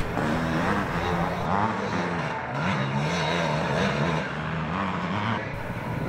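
Vintage motocross bike engine revving up and down repeatedly under load as it climbs the hill, its pitch rising and falling several times and fading somewhat toward the end.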